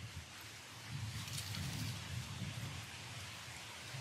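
Quiet outdoor background: a steady soft hiss with a faint low rumble about one to three seconds in.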